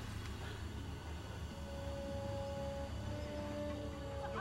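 Quiet orchestral film score: a few soft notes held long, coming in about halfway through, over a steady low rumble.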